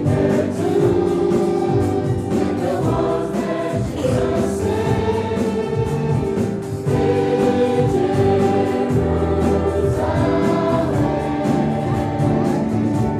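Choir singing a Christian hymn with instrumental accompaniment, voices holding sustained notes over a steady bass.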